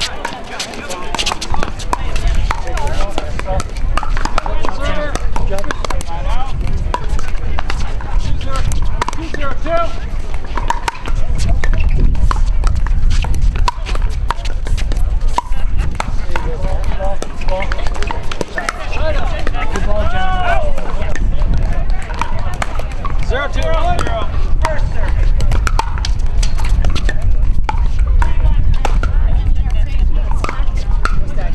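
Pickleball paddles popping against a plastic ball in rallies on this and neighbouring courts, a scatter of sharp clicks, over voices talking and a steady low rumble.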